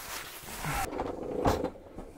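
A plastic packaging sheet rustling and crinkling as it is pulled off the top of a robotic lawn mower, then a single knock about one and a half seconds in as the mower is turned on the table.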